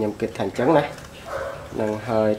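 A man talking in short phrases with a brief pause in the middle; no other sound stands out.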